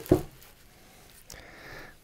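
A wad of paper towel rubbing and rustling over a wooden tabletop as spilled raw egg is wiped up. There is a short sound right at the start, and the rustling grows louder in the second half.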